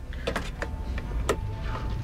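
A few sharp clicks and knocks over a low, steady room hum, with a faint thin tone held through the second half.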